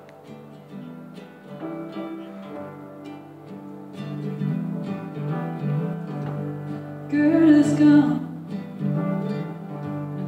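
Upright piano and acoustic guitar playing the opening of a folk song, with a voice coming in singing about seven seconds in.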